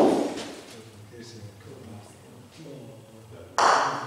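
Two sharp knocks of bocce balls striking, echoing in a large indoor hall: one right at the start with a long ringing decay, and a second just before the end.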